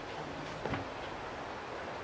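Steady wind noise on the microphone, with a faint rustle as a towel is moved over the shoes.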